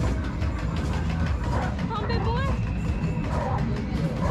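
Arcade game-room din: background music and voices over a steady low rumble, with a thin steady electronic tone about halfway through.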